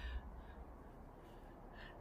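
Two faint, harsh bird calls, one near the start and one near the end.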